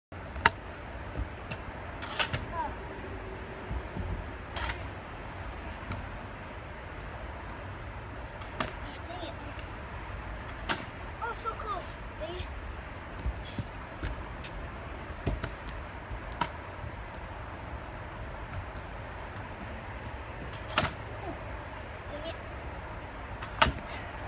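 Kick scooter clacking and knocking on a concrete patio as it is hopped and its handlebars spun: about ten separate sharp knocks spread out over the stretch, over a steady low rumble.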